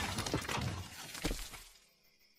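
Cartoon crash sound effect dying away after a falling metal pod hits the ground: rumbling debris with a few sharp cracks, fading out shortly before the end.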